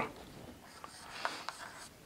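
Marker writing on a whiteboard: faint scratching strokes with a few short ticks of the tip against the board.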